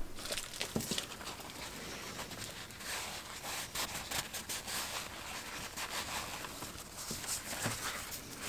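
Paper towel rustling and crinkling under the fingers as it is folded over a straight razor blade and rubbed along it, with many small crackles throughout.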